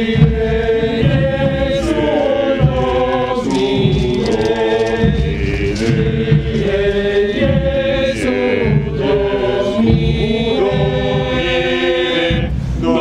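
A group of men singing a slow chant together, moving from one long held note to the next.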